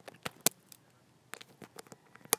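Handling noise of a phone being moved and gripped: a string of sharp clicks and taps, the loudest about half a second in and a quick cluster about a second and a half in.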